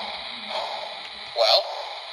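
Sound system of a model Polar Express 1225 Berkshire steam locomotive as the double-headed train starts to move. Slow, even chuffs come about once a second over a steady hiss and hum, the loudest about one and a half seconds in.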